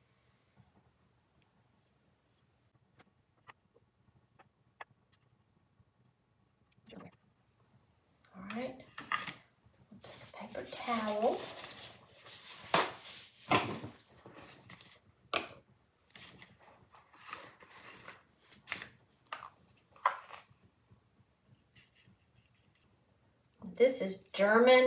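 A sheet of paper rustling and crinkling as it is pulled off a roll and spread out on a worktable, with scattered taps and clicks of small craft jars and tools. The first several seconds are nearly silent apart from a few faint clicks.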